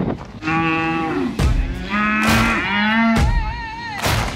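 Corriente cattle mooing: three separate calls, each under a second long, the first a little higher-pitched than the other two.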